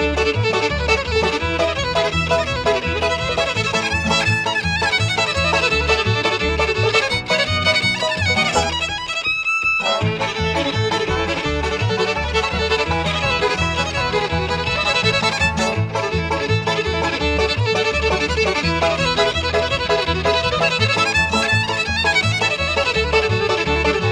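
Bluegrass band playing an instrumental led by fiddle over a steady bass beat, with a brief break in the playing about nine seconds in.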